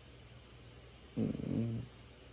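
A man's short, low murmured hum, a wordless "mm" from the throat, lasting under a second and starting a little past a second in.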